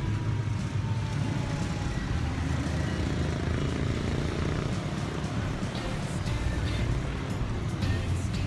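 Busy city road traffic: a steady rumble of passing cars and motorcycles, with music mixed in.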